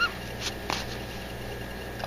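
Two faint clicks from hands working yarn and a crochet hook, over a steady low electrical hum.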